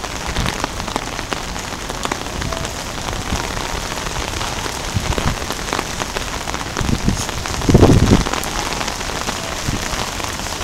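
Steady patter of rain on surfaces, dense with small drop clicks, with a brief louder low rumble about eight seconds in.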